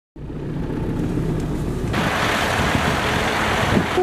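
A steady low engine rumble. About two seconds in, a louder, even rushing noise joins it.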